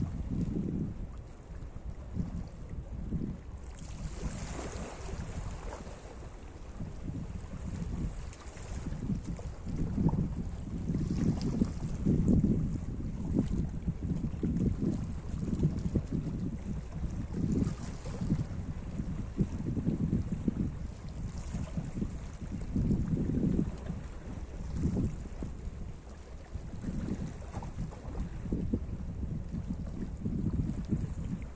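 Small sea waves lapping and washing over rocks at the shoreline, swelling and falling every second or two, with wind rumbling on the microphone. A brighter, louder wash comes about four seconds in.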